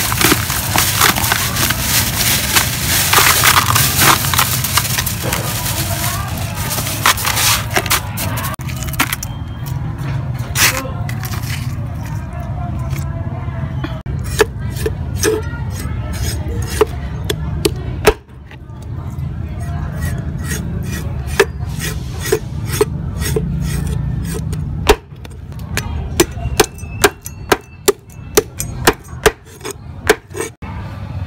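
Crushed ice poured and shovelled over fish in a plastic basin, a dense crunching for the first several seconds. Then scattered knocks of a fish being handled on a wooden chopping board, ending in a quick run of sharp cleaver chops through a fish's head, about two a second.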